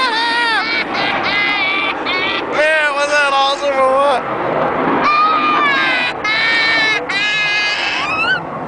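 A young child screaming with excitement in a string of high-pitched, wavering shrieks, with a short break around the middle.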